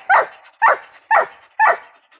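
Young Mountain Cur barking up a tree at a squirrel: four sharp barks about half a second apart. This is tree barking, the sign that the dog has the squirrel treed.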